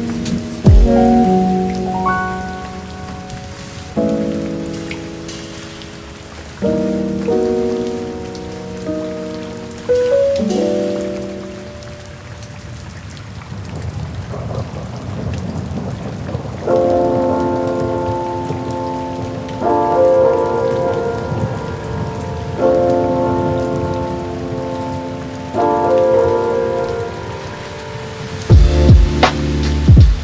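Recorded rain falling steadily, with a low rumble of thunder about halfway through, under slow chill-beat music whose soft chords change every few seconds.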